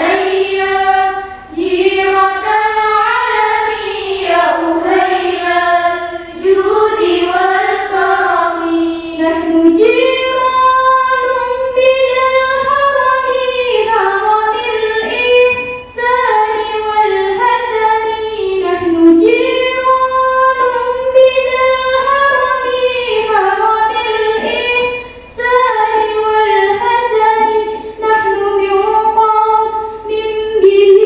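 Young schoolgirls singing sholawat (Islamic devotional songs in praise of the Prophet) together, one lead voice on a microphone with the group singing along, in long drawn-out melodic phrases broken by short breath pauses.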